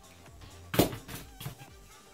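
Background music, with one sharp knock a little under a second in and a few lighter taps after it, from old laptop LCD panels being handled on a desk.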